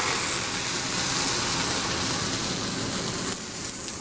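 Fireball of burning molten paraffin wax, thrown up when squirted water sinks into the hot wax, boils and sprays the wax into the flame: a steady rushing noise of flame that drops off about three seconds in as the fireball dies back.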